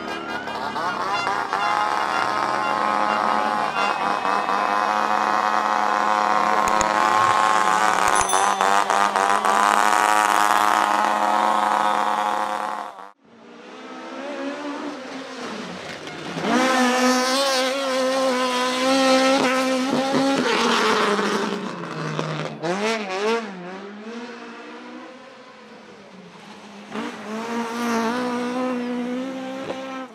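Rally car engines revving and accelerating hard, their pitch rising and falling. The sound cuts off abruptly about thirteen seconds in, and a wavering burst of engine revving follows.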